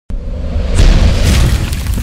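A deep cinematic boom sound effect for a logo intro. It starts suddenly, its low rumble is strongest around one second in, and a rushing hiss swells over it from about three quarters of a second.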